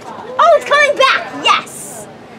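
A child's high-pitched voice calling out several short, excited syllables, followed by a brief hiss near the end.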